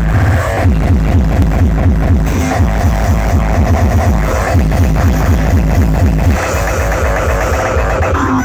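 Hardcore electronic dance music played loudly through a festival stage sound system, driven by a fast, heavy kick drum whose every beat drops in pitch.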